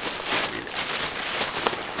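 Plastic bag and paper packing crinkling and rustling in irregular crackles as new caps are handled and unpacked, with one sharp click near the end.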